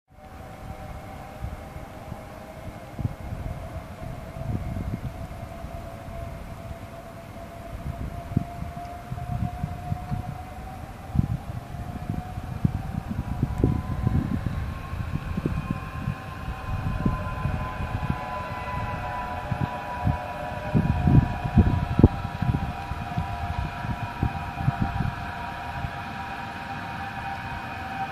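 An approaching tram's electric motors whining: a layered tone that rises in pitch around the middle, then holds and grows louder as the tram nears, over an irregular low rumble.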